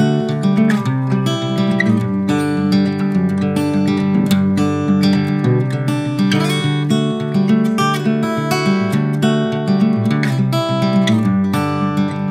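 Steel-string acoustic guitar strummed and picked in a steady chord pattern.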